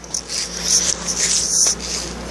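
Someone chewing a bite of watermelon close to the microphone, with irregular crunching.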